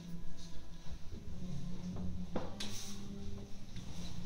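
Quiet room tone with a steady low hum, and a short burst of handling noise about two and a half seconds in.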